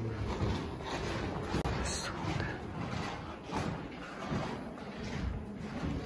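Indistinct background voices in a large room, with scattered soft knocks and handling noises.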